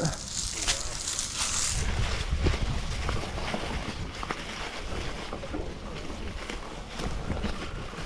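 Mountain bike riding over rough ground through tall dry grass: a steady rush of tyres and grass brushing the wheels and frame over a low rumble, with a few sharp rattles of the bike over bumps. The hiss is brightest in the first couple of seconds.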